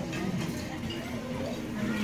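Murmur of background voices over a plush-toy claw machine, its claw working down in the prize pile.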